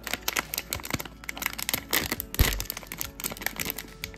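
A foil blind-box bag being crinkled and torn open by hand: a dense run of irregular crackles, with one heavier bump a little past halfway.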